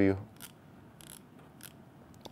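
Three faint, short detent clicks spaced over about a second and a half from the micro windage adjustment of a Black Gold competition bow sight being turned by hand.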